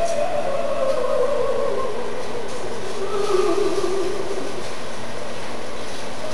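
A long ghostly 'ooo' wail that swoops up just before, then slides slowly down in pitch over about five seconds, over a steady low rumbling noise.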